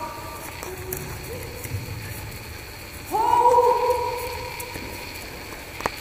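A voice calling out long held notes: a few short notes early, then a louder one that slides up into a note held for about two seconds. A single sharp knock comes just before the end.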